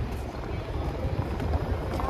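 Street noise: an uneven low rumble with faint voices of passers-by in the background.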